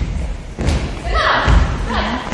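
Several dancers' feet landing together on a wooden hall floor during kicking guard-dance steps: about three heavy, evenly spaced thuds that echo in the large room.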